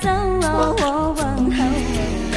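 A woman singing a Chinese folk-style song solo, her voice gliding and bending between held notes.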